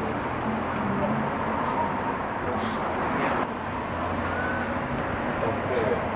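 City street ambience: steady traffic noise with a low rumble, and passers-by talking faintly in the background.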